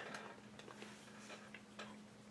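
Near silence with about half a dozen faint, light clicks and ticks scattered through it, over a faint steady hum.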